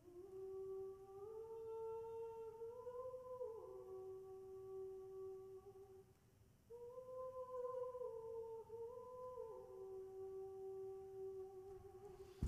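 A slow wordless melody, hummed on long held notes that step up and down, in two phrases with a short break in the middle.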